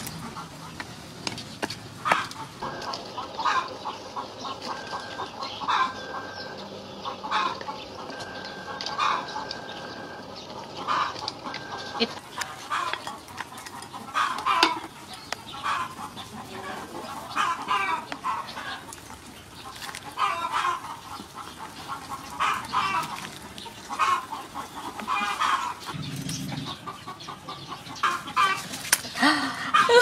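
Chickens clucking, short calls recurring every second or two.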